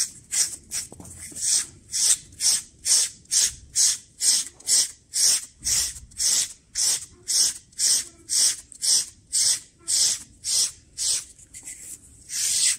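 SleekEZ deshedding blade scraping over a horse's short coat in quick, even strokes, a little over two a second, each one a short rasp. The blade is pulling dead hair and dirt out of a freshly clipped coat.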